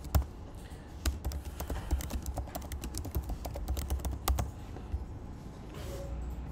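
Computer keyboard typing a search query: quick, uneven keystrokes for about four seconds, then the typing stops.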